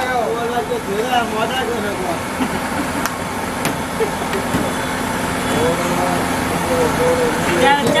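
Voices talking at times over a steady background of traffic and engine hum.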